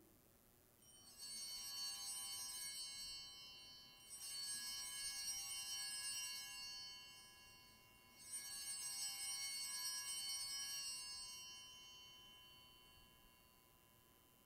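Altar bells rung three times, each ring lasting about three seconds and then fading, the last dying away slowly near the end. The ringing marks the elevation of the consecrated Host at Mass.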